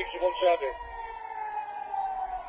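Civil-defence air-raid siren wailing: one long tone that rises slightly about half a second in and then slowly falls, warning of incoming missiles. A man's voice speaks briefly over it at the start.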